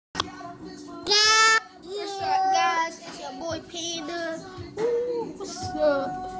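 A child singing in a high voice, with a loud held note about a second in, followed by shorter held and sliding notes.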